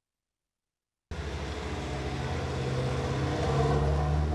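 After about a second of silence, a city bus's engine starts in abruptly, a low steady hum that grows slowly louder as the bus passes close by.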